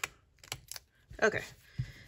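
Small scissors snipping through washi tape: a few short, sharp clicks of the blades closing, one right at the start, two about half a second in and another near the end.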